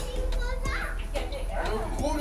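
Indistinct voices of people talking nearby, too unclear to make out words, over a steady low hum.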